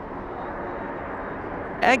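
Steady, even rush of jet engine noise from a Boeing 747 freighter slowing on the runway after landing. A man's voice starts right at the end.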